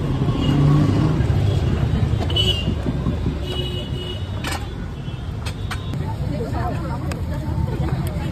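Steady low rumble of street traffic with background voices. A few sharp metallic clicks, about halfway through, come from the cast-iron sandwich toasters being turned with tongs on the gas burners.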